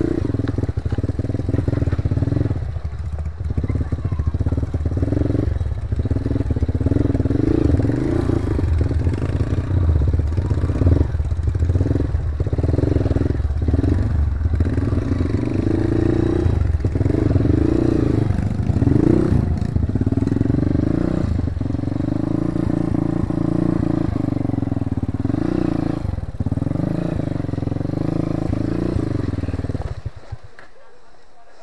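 Enduro dirt bike engine running at low speed on a rough, narrow trail, its pitch rising and falling with repeated throttle changes and short dips.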